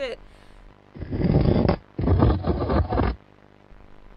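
A heavy drawer or piece of furniture being shoved across a floor in two scraping pushes, the first about a second in and the second just after it.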